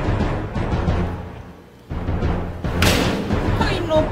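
Dramatic background music with a rolling timpani rumble. The roll breaks off briefly just before two seconds in and then swells again.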